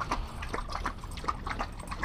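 A Belgian Malinois lapping water from a metal bowl: quick, rhythmic laps, about four a second.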